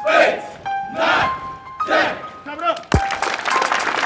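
A group of kids shouting a count together, about one shout a second, over background music. About three seconds in there is a thud, and the sound gives way to music with a sharp percussive beat.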